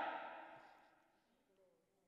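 The echo of a man's amplified voice dying away in a large hall within about half a second, then near silence: room tone.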